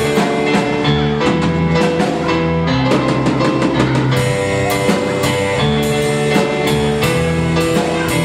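Live band of keyboard, drum kit and guitar playing an instrumental passage with a steady beat, with a quick run of drum hits about three seconds in.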